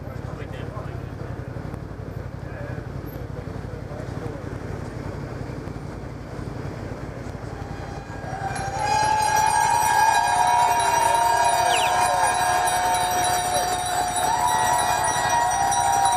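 Crowd of cyclists murmuring, then a bit past the middle many bicycle bells start ringing together in a loud, sustained chorus, with voices rising over it.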